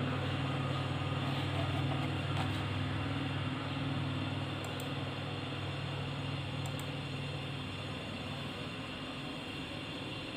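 A steady low mechanical hum over a background hiss, its deepest tones fading out about eight seconds in.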